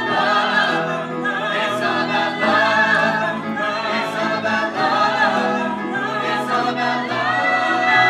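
Music with a choir singing in harmony, the voices wavering on sustained notes; a high note is held near the end.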